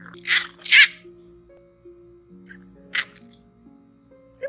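Background music with slow, sustained notes, over which bulldog puppies at rough play give short high-pitched squeaks: two close together near the start and one about three seconds in.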